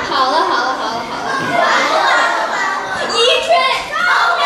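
Speech: a woman talking into a microphone, with children's voices joining in.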